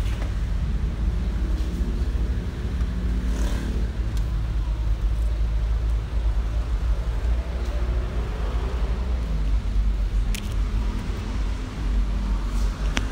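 Steady low background rumble with a sharp click about ten seconds in.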